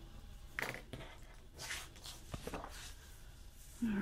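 Sheets of planner paper being handled and slid across a cutting mat: a few short, soft rustles.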